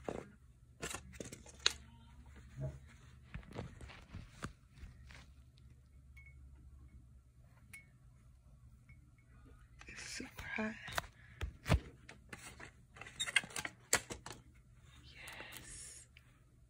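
Sublimation transfer paper and tape being peeled off a hot ceramic mug by gloved hands, with scattered crinkles, scrapes and light knocks of the mug on a hard surface, busier about ten seconds in.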